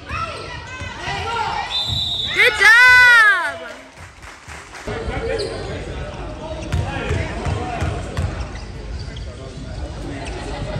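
Basketball game sounds in a gym: a short high whistle about two seconds in, then a loud drawn-out shout that rises and falls in pitch, the loudest sound here. After it, a basketball bounces on the hardwood floor among background voices.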